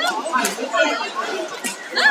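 Overlapping chatter and calls from spectators and coaches in a large sports hall, with a couple of short, sharp sounds about half a second and near two seconds in.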